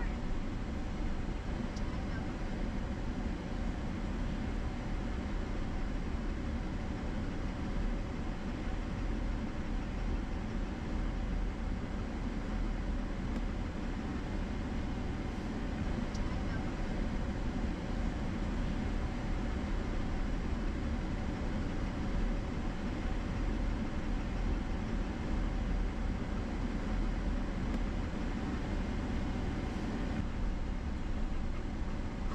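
Cabin noise of a Chevrolet Silverado pickup driving on a gravel road: a steady low rumble of tyres on gravel and the engine.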